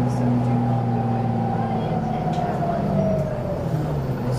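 Detroit Diesel 6V92 two-stroke V6 diesel of a 1991 Orion I bus running, heard inside the passenger cabin. A whine that falls steadily in pitch runs from about a second in to near the end, where the low engine note also drops.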